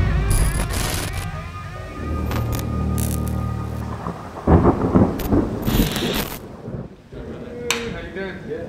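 Thunder and rain sound effects over a deep, sustained ominous music drone, with the loudest thunder cracks about halfway through; it falls quieter near the end.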